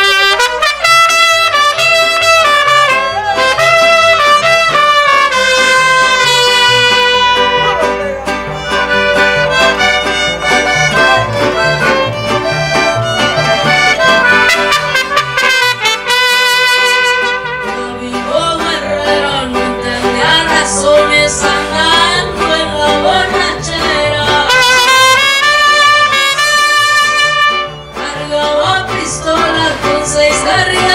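Mariachi band playing a song live, trumpets leading over violin, guitars, guitarrón and accordion. The music is loud and starts right at the beginning, with a short lull about halfway and another near the end.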